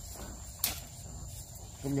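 Steady high-pitched trill of field insects, with one sharp click about two-thirds of a second in and a low wind rumble on the microphone.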